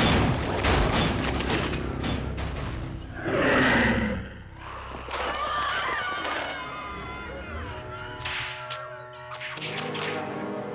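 Action soundtrack music with sound effects: thuds and whooshes in the first few seconds, a loud wavering cry falling in pitch about three and a half seconds in, then held music chords near the end.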